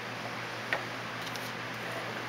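A single light click about two-thirds of a second in as the primed plastic hull part is turned over and set down on the work mat, over a steady hiss and hum of shop background noise.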